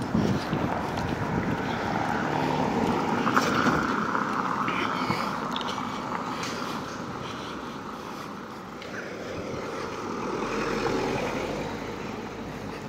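Steady rushing noise of moving along a paved street: wind on the microphone mixed with tyre rumble over paving stones. It swells about three to four seconds in and again near the end.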